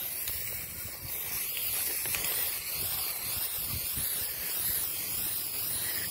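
Aerosol spray paint can spraying onto umbrella canopy fabric in a steady hiss.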